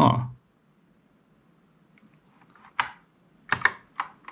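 A handful of scattered keystrokes on a Kinesis Advantage 360 split keyboard with Cherry MX Brown switches, faint at first, then a few sharper clicks in the second half. The keys are being pressed on a keyboard that has stopped responding and seems stuck.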